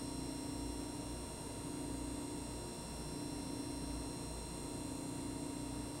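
Steady background hum and hiss with several faint steady tones and no distinct event: electrical hum and room tone under the film playback.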